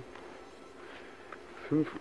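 Faint buzz of flying insects in a quiet pause, with a man's voice starting to speak near the end.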